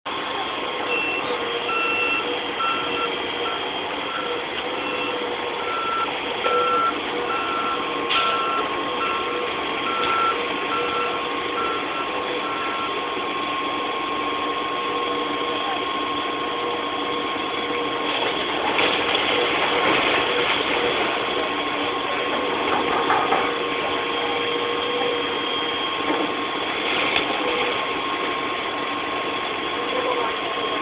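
Steady drone of heavy vehicle engines running, with a steady whine throughout. A reversing alarm beeps about twice a second for the first dozen seconds, then stops.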